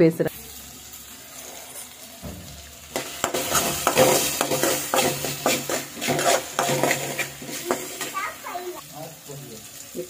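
Chopped green beans, tomato and onion frying in oil in an aluminium kadai, sizzling, while a perforated steel ladle stirs them, scraping and clinking against the pan. The stirring starts about three seconds in; before that only a fainter sizzle is heard.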